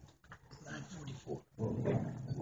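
Indistinct human voices in the room, no clear words, getting louder about a second and a half in.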